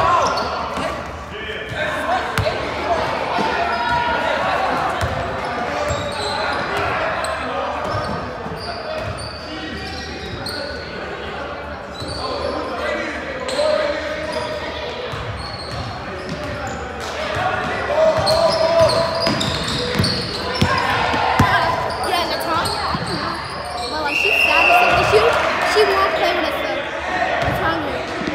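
Basketball game on a hardwood gym floor: the ball bouncing amid indistinct calling voices of players and spectators, echoing in the large gym, with the voices louder near the end.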